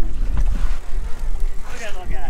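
Wind buffeting the microphone, a loud uneven low rumble, with voices briefly near the end.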